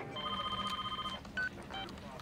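A phone's electronic trilling ring, one burst lasting about a second, followed by a short beep; it is an incoming call that gets answered a moment later.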